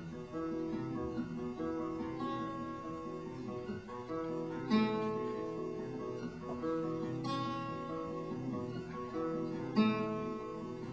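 Solo acoustic guitar playing a song's instrumental intro: ringing chords that change through the passage, with a harder strum accent about every two and a half seconds, three times.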